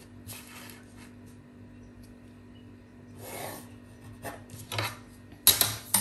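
A pencil scratching along a ruler on brown pattern paper, drawing lines in two soft strokes, followed by a few light taps and a louder knock near the end.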